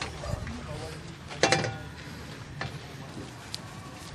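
A carbon steel wok on a portable gas stove gives a single short metallic clink about one and a half seconds in, with a lighter tap near the end, over a low steady background.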